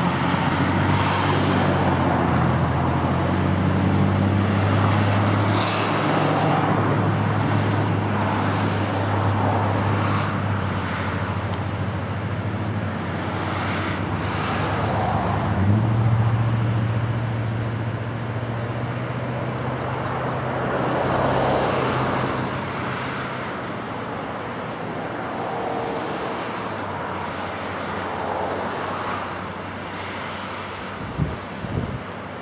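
Canadian Pacific diesel-electric freight locomotives running at low speed: a steady low engine drone that steps slightly higher in pitch about sixteen seconds in and fades over the last few seconds, over a steady rushing wash of noise.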